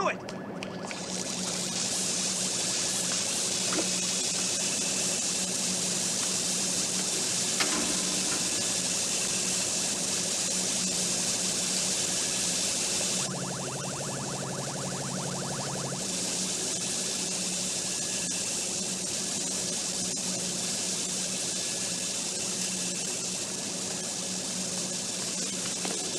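Water rushing steadily from a tap turned full on and running out across a concrete floor, with a low steady hum beneath. About halfway through, a rapid electronic pulsing comes in for a few seconds.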